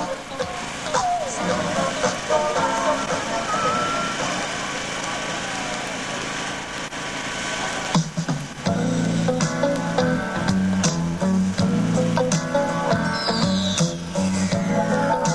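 Music: a hissy passage with a few gliding tones, then about eight and a half seconds in a fuller section with a heavy bass and a repeating beat comes in.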